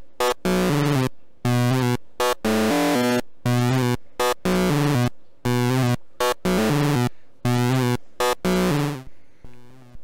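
SSI2131-based Eurorack VCO's pulse-wave output, frequency-modulated through its linear FM input by a second VCO's triangle wave, playing a sequence of short, bright, buzzy notes at changing pitches. The notes come in an uneven rhythm of roughly two a second and stop near the end.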